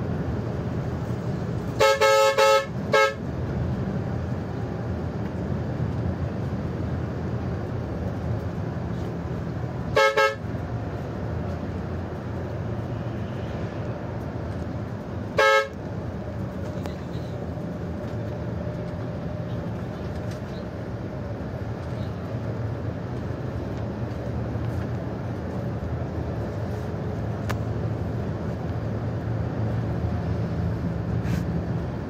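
Bus horn sounded in blasts over the steady drone of the coach's engine and tyres, heard from inside the driver's cab. A long blast and a short one come near the start, then one short toot about a third of the way in and another about halfway.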